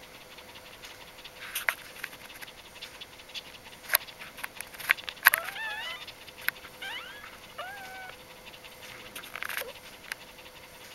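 Newborn Bichon Frisé puppies calling while they nurse: two short runs of thin, high squeaks that bend up and down, about halfway through. A few sharp clicks are scattered around them, the loudest just as the squeaks begin.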